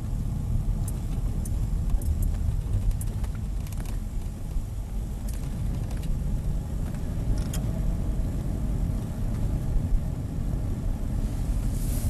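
Car cabin noise while driving: a steady low rumble of engine and road, with a few faint clicks.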